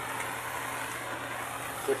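Handheld gas torch flame hissing steadily while it heats a copper pipe joint for sweat soldering.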